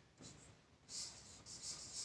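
Marker pen writing on a board: a few short, faint, scratchy strokes as letters are drawn, coming closer together in the second half.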